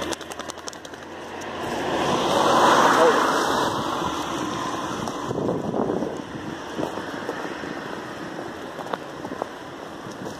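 A car passing by on the road: tyre and engine noise swells to a peak about three seconds in, then fades away.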